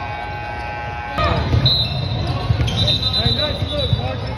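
Basketball game sounds on a hardwood gym court: the ball bouncing with a few sharp thuds, sneakers squeaking in short chirps, and players and spectators talking. A steady held tone, like a buzzer, sounds for the first second and stops abruptly at a cut.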